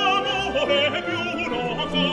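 Operatic singing with a wide, wavering vibrato over sustained orchestral accompaniment.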